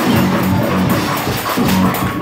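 Loud live gospel praise-break music from a church band, with drums keeping a steady, pulsing beat.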